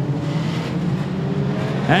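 Pack of modified sedan speedway cars running at low revs in a single line under caution, a steady drone of several engines together, as the field lines up for a restart.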